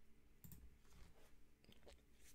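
A few faint computer-mouse clicks over near-silent room tone.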